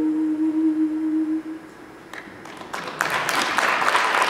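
A woman singing unaccompanied holds the last note of a Russian folk song; the note ends about a second and a half in. After a brief pause, audience applause starts about three seconds in.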